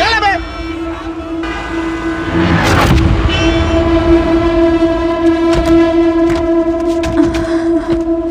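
A long, steady vehicle horn blast on a single note, holding for about six seconds, with a whoosh about three seconds in.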